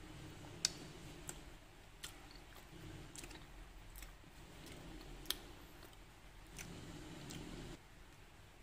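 A spoon clicking against a bowl about seven times, two of them louder, with soft chewing in between, as a bowl of sweet potato and tapioca-ball chè in coconut milk is tasted.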